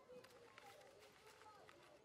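Near silence, with faint crinkles of a sheet of paper being crumpled into a ball by hand.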